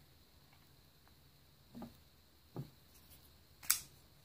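Open Honey Badger folding knives being set down on a padded cloth mat: two soft thuds about two seconds in, then a sharper click near the end as another knife is placed.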